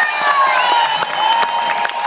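Concert audience applauding and cheering: dense clapping with drawn-out shouted cheers over it.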